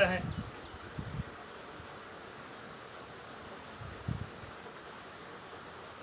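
Quiet outdoor background: a steady faint hiss, with two soft low thumps about a second in and about four seconds in, and a brief thin high whine a little after three seconds.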